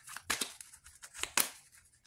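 Tarot cards being handled on a cloth-covered table: about six short, sharp flicks and slides spread through the two seconds, the strongest about one and a half seconds in.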